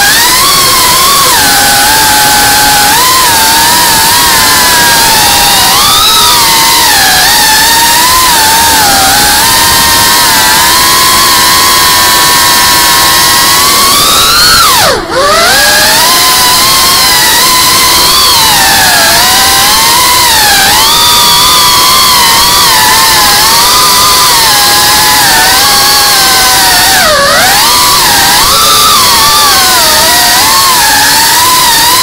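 Geprc Cinelog 35 ducted FPV drone's brushless motors and propellers whining loudly, picked up by its onboard camera, the pitch wavering up and down with the throttle. About halfway through, the whine drops sharply and climbs back, as the throttle is cut and punched again; a smaller dip comes near the end.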